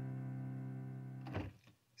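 A strummed C chord on a stringed instrument rings on and slowly fades, then cuts off abruptly about a second and a half in.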